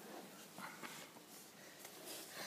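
Near silence: quiet room tone with a few faint rustles and clicks.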